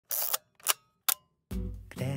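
Three camera shutter-and-click sound effects in quick succession, followed about one and a half seconds in by background music.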